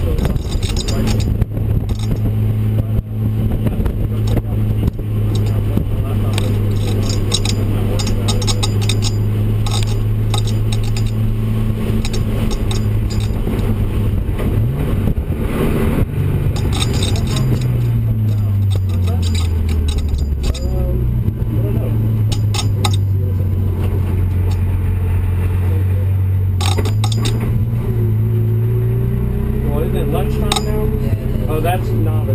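Turbocharged BMW E36 M3 inline-six heard from inside the cabin at light throttle and low, steady revs, a constant drone. The engine note drops and picks back up about two-thirds of the way through and rises again near the end as the revs change.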